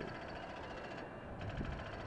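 Faint, steady background noise with a low rumble that swells slightly near the end.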